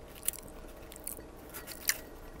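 Fingers picking through potato chips in a small glass bowl: a few short, light crisp crackles, the loudest near the end.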